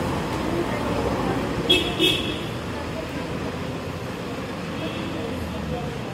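Road traffic noise with a white Toyota SUV pulling out of its parking space. Two short high-pitched beeps sound close together about two seconds in.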